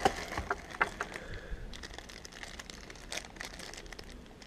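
Thin clear plastic bag crinkling in the hands, with sharper crackles in the first second or so, then lighter rustling.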